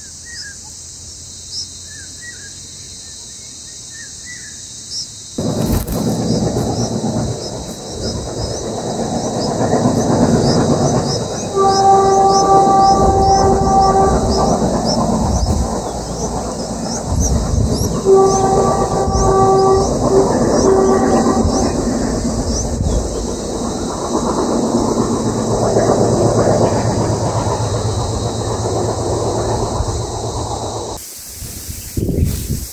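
A train passing close by: its rumble starts suddenly about five seconds in and runs on, loud, with two long horn blasts in the middle. Insects trill steadily throughout, and a few small bird chirps are heard in the first seconds.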